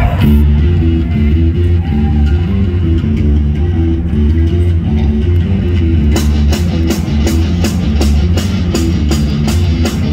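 Live heavy rock band playing loud: a low bass and guitar riff starts abruptly, and about six seconds in the drums come in with regular cymbal strokes, about three a second.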